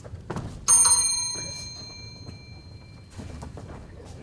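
A single bright metallic ding, like a small bell, struck about two-thirds of a second in and ringing out over about two seconds. A soft thump comes just before it.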